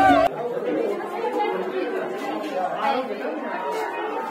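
Several people chattering at once, voices overlapping and indistinct. Loud music cuts off suddenly just after the start.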